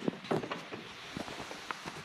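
Faint, scattered small clicks and rustles of a clear plastic oil-extractor hose being handled and pushed over the extraction straw in an engine's oil filler tube.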